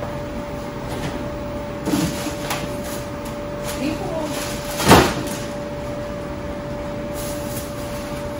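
Refrigerator door and drawer being opened and food pulled out: a click about two seconds in and a sharp knock about five seconds in, over a steady hum.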